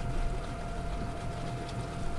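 Steady low outdoor background rumble with a faint, thin, steady whine running through it.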